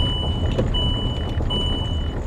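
Dashboard warning chime in a Land Rover Discovery, the seatbelt reminder for an unbuckled driver: a high beep repeating about every three-quarters of a second, three times, over low engine and road rumble in the cabin as the vehicle drives slowly.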